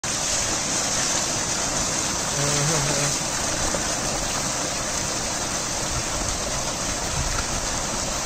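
Natural spring water gushing steadily from a spout and splashing down onto a person sitting beneath it and into a shallow rocky pool.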